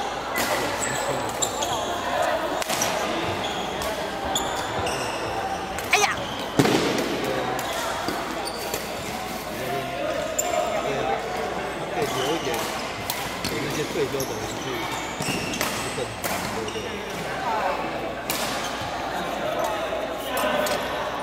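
Badminton play: sharp racket-on-shuttlecock hits and the patter and squeak of shoes on the court floor, over steady chatter and hits from neighbouring courts, echoing in a large hall.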